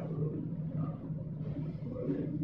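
Steady low hum with faint handling sounds as a plastic Coca-Cola bottle is picked up.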